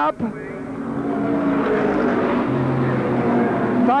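Racing car engines running, the sound growing louder over the first second or so and then holding steady, with one engine note falling in pitch as a car goes by.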